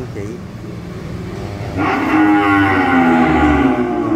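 A young cow mooing: one long moo that starts a little under two seconds in and falls slightly in pitch.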